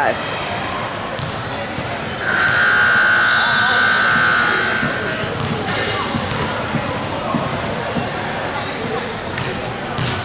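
Gym scoreboard buzzer sounding one steady tone for about two seconds, starting a couple of seconds in, marking the end of a timeout. Around it, echoing gym noise of indistinct voices and a basketball bouncing.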